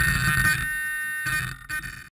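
Tricopter's electric motors and propellers whining steadily on the ground. The low part of the sound drops away about two-thirds of a second in, and the sound dips and then cuts off near the end.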